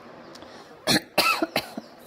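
A person coughing, three short coughs close together about a second in.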